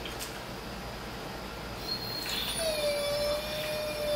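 A dog whining: one long, steady, high whine that starts about two-thirds of the way in, after a quieter stretch.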